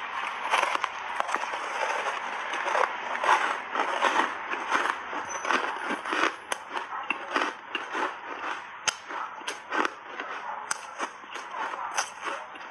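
Close-up crunching and chewing of a big bite of dry, crunchy reshaped ice coated in matcha powder: dense crackling crunches in the first half, thinning to separate crunches later.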